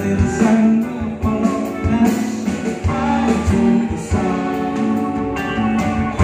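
Live band playing a song, with electric keyboard and guitar and a voice singing over them.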